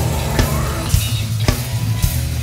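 Live heavy metal band playing: a Tama Starclassic drum kit with crashing cymbals over distorted electric guitar and bass, the snare striking about twice a second.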